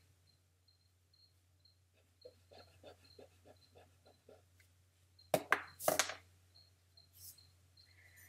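Graphite pencil making a quick run of short strokes on paper, about four a second, followed by two sharp clacks about half a second apart, louder than the strokes, over a low steady hum.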